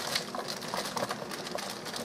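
Baby carrots being tipped into a pressure cooker's inner pot, landing on potatoes and the pot's side in a patter of light, irregular knocks with some rustling.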